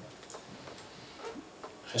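Quiet room tone in a pause between speech, with a few faint, scattered clicks.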